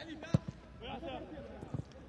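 A football kicked once, a sharp thud about a third of a second in, with faint voices of players and crowd around it.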